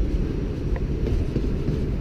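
Steady low rumble of wind buffeting an action camera's microphone, with a faint click about three-quarters of a second in.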